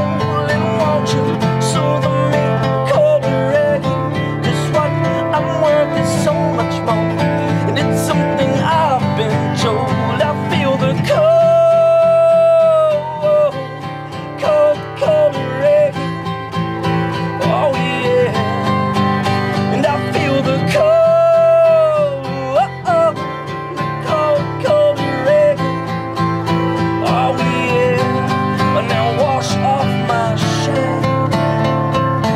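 Live acoustic band playing a mid-song passage: guitars strumming steadily under a lead line, which twice holds a long note that bends in pitch.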